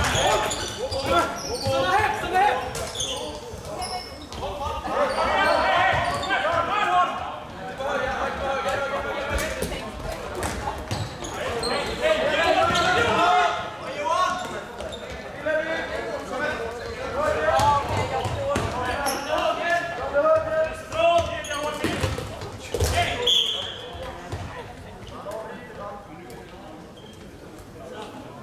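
Floorball game play in a large sports hall: sticks striking and the plastic ball clacking off sticks and boards again and again, with voices calling across the court.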